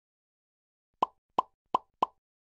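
Three short, sharp pops about a third of a second apart, starting about a second in: a sound effect for an animated logo intro.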